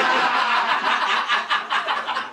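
Several people laughing together, a loud burst of laughter in quick repeated pulses.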